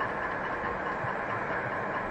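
Steady room tone: an even low hum and hiss with no distinct events.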